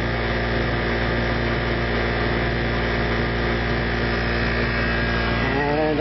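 Induction motor driving an alternator, running with a steady electrical hum and machine drone.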